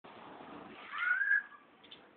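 A pet animal's single high whine, a little over half a second long, rising slightly and then holding steady.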